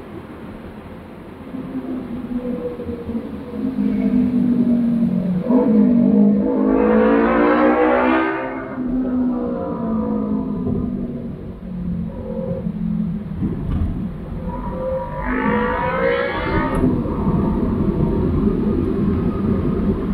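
Road traffic from a car driving among motorbikes: a steady engine hum, with a louder engine rising and falling in pitch twice, about six seconds in and again about fifteen seconds in.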